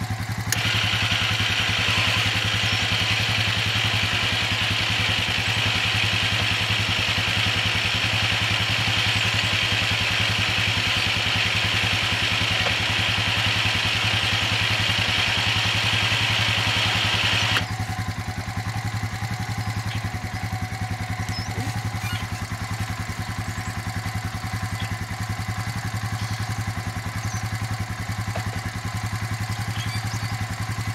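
Honda Rancher 350 ATV's single-cylinder engine idling while its Warn 2500 lb electric winch runs with a steady whine, paying out cable under the load of a 250 lb tilting tower. The winch stops abruptly after about seventeen seconds, and the engine keeps idling.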